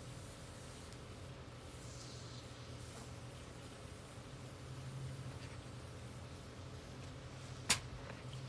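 Can of Great Stuff expanding foam squirting briefly, a faint short hiss about two seconds in, over a steady low hum. A single sharp click near the end.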